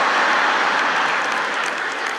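Audience applauding, easing off slightly toward the end.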